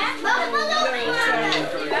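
Many children's voices chattering and calling out over one another.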